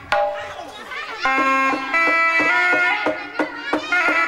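Sundanese kendang pencak ensemble playing: kendang barrel drums beat sharp strokes under a nasal, reedy melody from a tarompet (Sundanese shawm). The melody slides between held notes. It drops away briefly after a loud drum stroke at the start and comes back about a second in.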